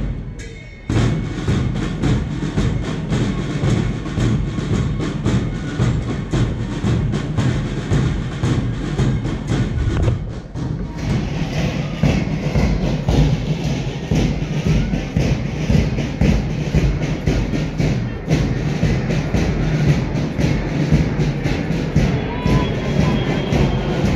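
Marching music with a steady drum beat, coming in loud about a second in.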